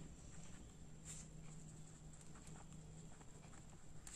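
Faint strokes of a pen writing on notebook paper: a scattering of small scratches and ticks, over a faint low steady hum.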